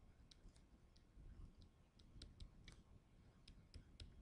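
Faint, irregular light clicks of a stylus tip tapping on a tablet screen during handwriting, about a dozen over a few seconds, over a low background hum.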